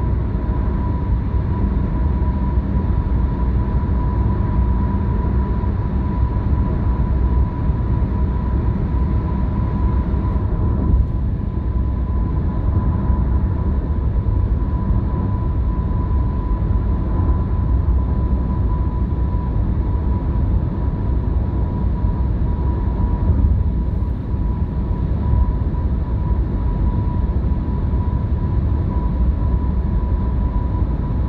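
Car driving at expressway speed, heard from inside the cabin: steady tyre and road noise with a low engine hum and a faint, steady high whine. The noise thins a little about ten seconds in, as the car leaves a tunnel.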